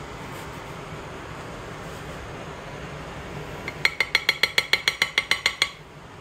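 A metal spoon tapping rapidly against a ceramic dish, about fourteen ringing clinks over two seconds starting a little past the middle, over a steady low room hum.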